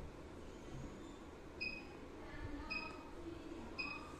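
Three short, high electronic beeps about a second apart, over low, steady room noise.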